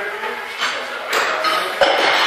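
Metal weight plates and barbell clanking: three sharp knocks in two seconds, the last and loudest near the end, over a steady background hubbub.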